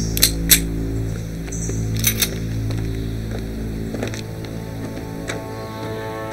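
Tense background music score with a steady low drone. Over it come two pairs of sharp metallic clicks, one right at the start and another about two seconds in, like pistols being cocked.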